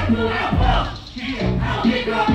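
Live hip hop music over a festival PA, heavy bass with voices over it; the beat cuts out for about half a second around the middle, then comes back in.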